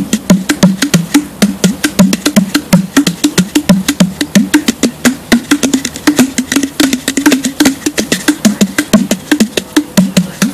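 Gourd udu played by hand in a quick, steady rhythm of slaps on the gourd body, each followed by a deep hollow tone that bends in pitch as it rings inside the gourd. These are the udu's two tones: the slap on the shell and the echo inside.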